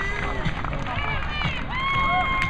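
Indistinct voices of people talking and calling out across an open field, one voice holding a long call near the end, over a steady low rumble of wind on the microphone.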